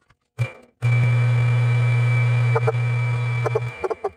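Metal lathe switched on, its motor running steadily with a low hum and a high whine while the three-jaw chuck spins a PTFE rod, then switched off near the end; a few light clicks along the way.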